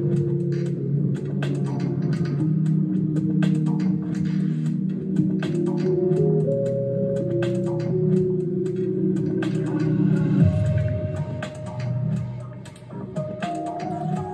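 An IDM-style electronic track playing: sustained organ-like synth chords that move every second or two, with crisp clicky percussion ticking over them. About ten and a half seconds in the low end shifts, and near the end a higher line steps upward.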